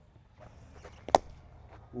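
A cricket bat striking the ball once: a single sharp crack a little over a second in.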